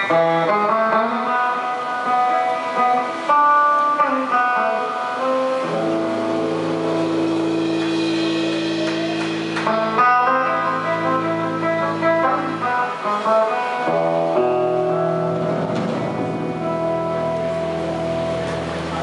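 Solo electric guitar intro: quick runs of picked single notes, then long ringing held notes over a sustained low note through the middle, then more picked notes to close.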